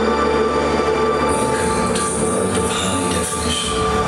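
A TV commercial's soundtrack playing through loudspeakers in a room: held music over a steady low rumble, with a rushing noise joining about a second in.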